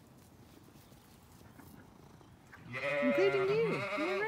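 A Zwartbles ewe bleating once, a loud quavering call starting about two and a half seconds in and lasting about a second and a half.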